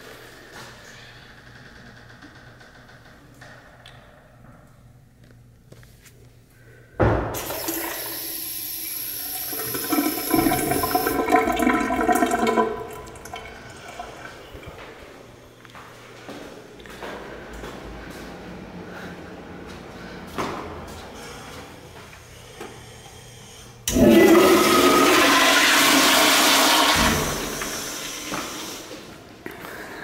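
Two toilet flushes in a tiled public restroom. The first is a sudden loud rush of water about seven seconds in that lasts about five seconds and has a whistling tone in it. The second starts suddenly about twenty-four seconds in and tapers off over a few seconds.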